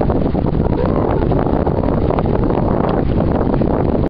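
Wind buffeting the microphone over sea waves breaking and washing against rocks.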